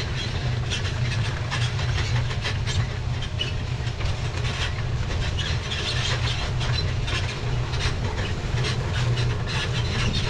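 A John Deere high-speed anhydrous toolbar's disc row units running through dry ground, heard up close: a steady low rumble with dense, irregular clattering and rattling on top.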